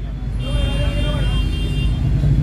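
Steady low rumble of background noise, with a faint voice and a thin high-pitched tone through the middle of it.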